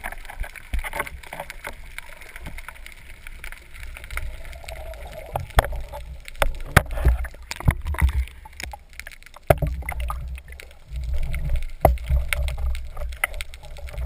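Underwater sound picked up through a GoPro's waterproof housing mounted on a speargun: a muffled low rumble of water movement, with many scattered sharp clicks and a few louder knocks.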